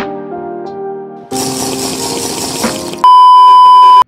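Soft background music of sustained keyboard notes, cut off about a second in by a loud rushing hiss, then a very loud steady single-pitched beep, like a censor bleep, for about the last second.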